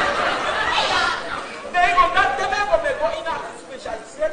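Speech: people talking, with background chatter.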